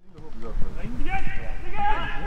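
Footballers calling and shouting to one another in Danish on the pitch, over a steady low rumble. The sound fades in over the first half second.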